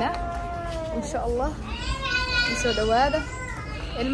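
A woman's high-pitched voice in a sing-song, drawn-out delivery, with long held notes that glide up and down.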